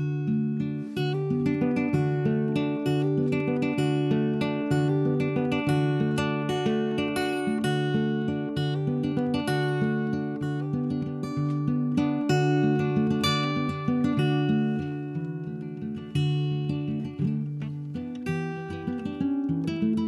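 Solo acoustic guitar played with a capo: a picked instrumental passage of single notes over recurring bass notes, beginning abruptly.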